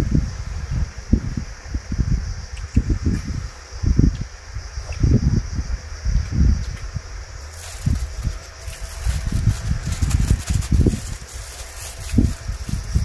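Wind buffeting the microphone in irregular low rumbling gusts. Thin plastic crinkles with fine crackling from about halfway through.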